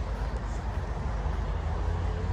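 Steady low rumbling outdoor background noise, with no distinct events.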